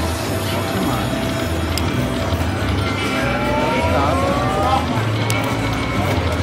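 Buffalo Gold slot machine playing its free-games bonus music and reel sounds as a new free spin runs, with a set of rising tones a little past halfway. Background voices are mixed in.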